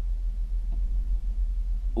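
Steady low rumble heard inside a truck cab, with no other events.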